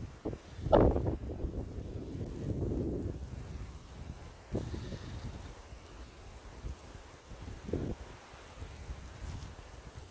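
Footsteps through fresh, deep snow, a few irregular thuds, over wind rumbling on the microphone.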